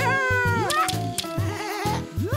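Bouncy children's cartoon music with a steady repeating bass beat. High cartoon voice or squeak effects slide down and up in pitch over it several times.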